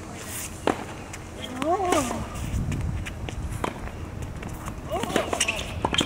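Tennis rally on a hard court: sharp pops of racquets striking the ball and the ball bouncing, a few seconds apart, with short grunts or exclamations from the players between them.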